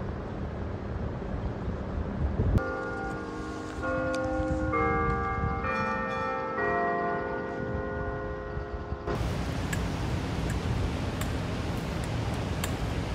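Clock-tower bells of San Francisco's Ferry Building chiming a slow tune, one note about every second for roughly six seconds, the notes ringing over one another. Steady street noise comes before and after the chimes.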